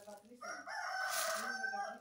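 A rooster crowing once: one long, steady call of over a second that stops sharply near the end.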